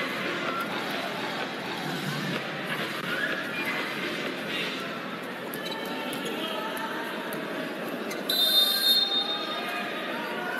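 Arena crowd noise: a steady din of many voices with scattered shouts. Near the end there is a brief high tone lasting under a second.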